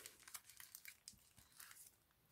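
Faint crinkling and rustling of a clear plastic packet and card being slid out of a paper pocket, heard as a string of short, light crackles.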